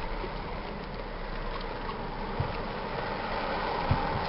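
Steady rumble and hiss inside a car cabin with the engine running, with two faint thumps, about two and a half seconds in and near the end.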